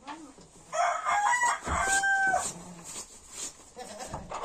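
A rooster crowing once, starting about a second in and lasting around two seconds, ending on a held note.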